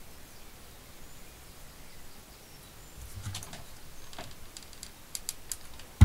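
Hands handling small craft pieces at a work table: a scatter of light clicks and taps starting about halfway through, quickening near the end and closing with a louder knock.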